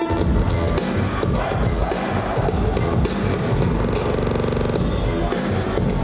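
Loud electronic dance music (techno/house) with a steady heavy beat, played over a club sound system, with a brief fast buzzing roll about four seconds in.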